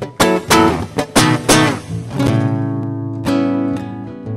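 Acoustic guitar strummed: a run of quick, sharp chord strokes for about two seconds, then a chord left ringing and struck again a little after three seconds.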